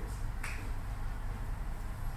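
Steady low room hum in a pause between speech, with one short sharp click about half a second in.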